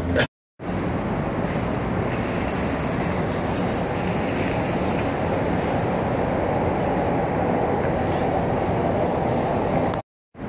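Steady city traffic noise from the street far below a high-rise balcony: an even rush with no separate events. The sound drops out completely for a moment about half a second in.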